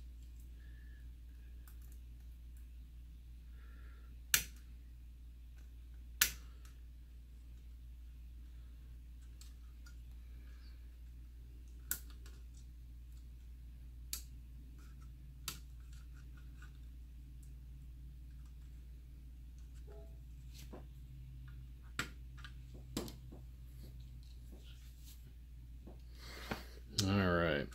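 Scattered sharp clicks and taps of plastic as a router's circuit board and antenna wires are handled and pressed back into its plastic case, over a steady low hum.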